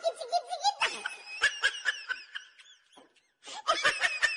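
High-pitched laughter in quick repeated pulses. It fades out a little past the middle, then starts again shortly before the end.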